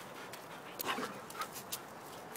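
A dog close by breathing and snuffling softly: a few faint, short breathy sounds with light clicks, mostly around the middle.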